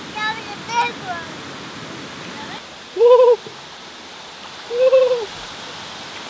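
Steady rush of a shallow rocky river running over stones and a small cascade. Brief voices near the start, then two short, hooting calls about three and five seconds in.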